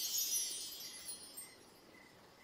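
A high, shimmering chime-like sparkle fading away. From about a second in, faint short high chirps repeat about twice a second.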